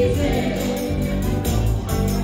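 Live band playing a song with female vocals, electric guitar, bass and drum kit; a long held sung note breaks off right at the start while the bass and drums carry on.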